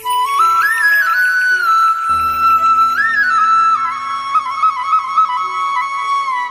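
Background music: a flute playing a slow, ornamented melody with slides between notes. A low, sustained drone comes in beneath it about two seconds in.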